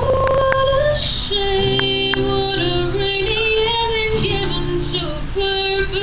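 A woman singing live into a microphone, holding long notes, over a strummed acoustic guitar.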